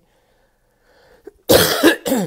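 A man coughs: about a second and a half of near silence, then one loud, harsh cough that runs to the end.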